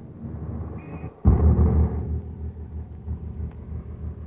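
Car engine running with a low, pulsing rumble that comes in suddenly much louder about a second in.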